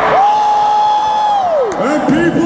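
A man's high, held 'woooo' shouted into a microphone and carried over the arena sound system, holding one pitch for about a second and a half, then sliding down sharply near the end. A crowd cheers underneath.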